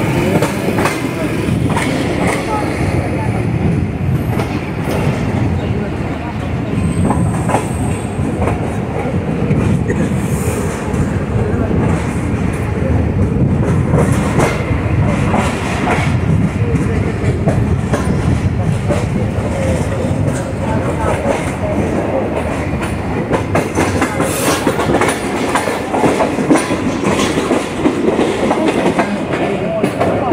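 Passenger coaches of the Tezgam Express rolling slowly over jointed track, heard from aboard. A steady rumble runs under repeated clacks of wheels over rail joints.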